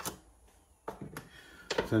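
Two light clicks about a third of a second apart, about a second in, as a Morse-taper tool is taken out of a lathe's tailstock quill and handled.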